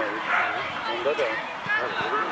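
Several short shouted calls from voices on and around a youth football pitch, children's and adults' voices calling out during play.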